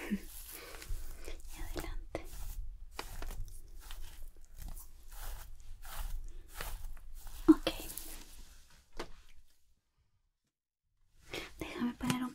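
Fingertips rubbing and pressing through long hair, making an irregular crinkly, scratchy rustle that stops abruptly about ten seconds in, followed by a second or so of dead silence.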